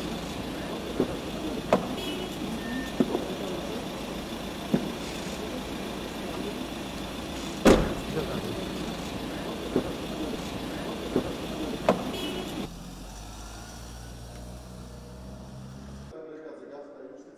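A passenger van's engine running amid outdoor noise and background voices, with scattered clicks and knocks and one loud thump about eight seconds in as the van's door is shut. About thirteen seconds in the sound drops to a quieter steady low hum.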